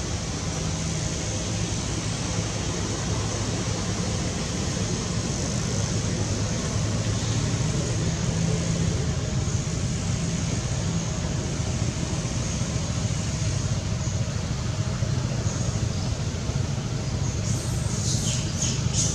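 Steady outdoor background rumble, like distant road traffic, with a few short high squeaks coming in near the end.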